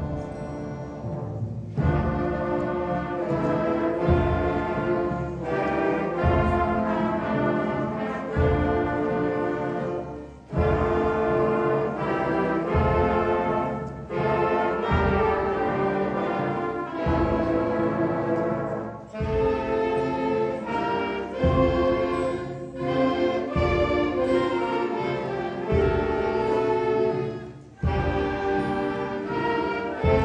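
A middle school concert band of woodwinds, saxophones and brass playing a loud, full passage, with brass chords over heavy low accents that fall about every two seconds. The sound drops back briefly a few times and dips just before the end.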